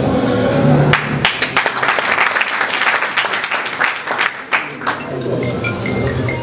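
Audience applauding in a hall: many hands clapping, starting about a second in and dying away after about four seconds.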